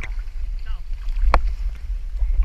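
Low rumble of sea water moving against a camera held at the water's surface, with one sharp knock a little past halfway.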